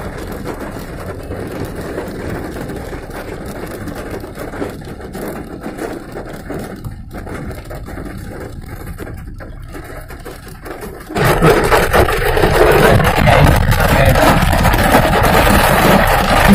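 Heavy rain on a moving car, heard from inside the cabin together with engine and road noise. About eleven seconds in, the sound suddenly becomes much louder and harsher.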